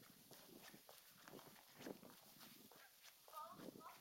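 Quiet footsteps on brick paving, a soft irregular knocking two or three times a second. Near the end comes one short pitched call that bends up and down.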